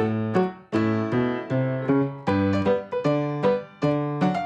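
Background piano music: notes and chords struck about twice a second, each dying away before the next.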